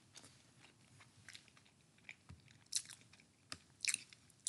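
A person chewing pizza close to the microphone: faint, irregular mouth clicks and crunches, a few of them louder near the end.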